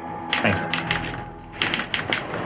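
Typewriter keys clattering in short, irregular runs of sharp clicks, over the last held chord of a music sting fading out at the start.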